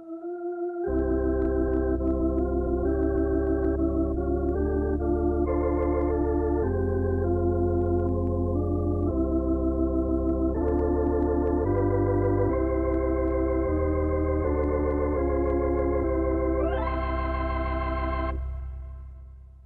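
Lowrey electronic home organ playing a melody on an organ voice with vibrato, its Automatic Organ Chord (AOC) harmony adding notes beneath each melody note so that one finger sounds a full three-note chord, over low bass notes. A single note sounds first and the full chord and bass come in about a second in; near the end the melody rises in a glide to a high held note.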